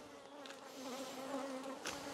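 Honeybees buzzing around an open nucleus hive: a faint, steady hum that comes in about half a second in. One light tap near the end.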